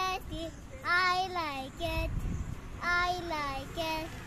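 A young boy singing a rhyme in a high sing-song voice, with drawn-out sliding notes about a second in and again about three seconds in.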